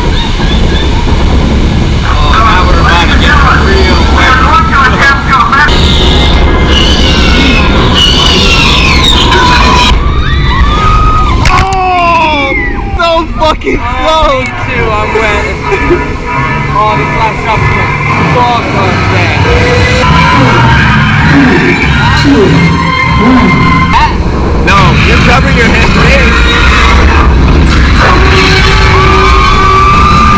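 Loud ride soundtrack on a boat water ride's indoor lift: music and a voice over the ride speakers, with shrill swooping cries in the middle, over a steady low rumble from the lift.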